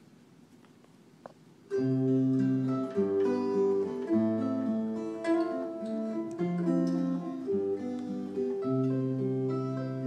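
Acoustic guitar playing the opening of a song, starting suddenly about two seconds in after a short quiet with a faint click: picked notes and chords over a low bass line.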